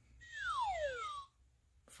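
An electronic sound-book button plays a falling whistle effect for the word 'down': one tone that slides steadily downward over about a second.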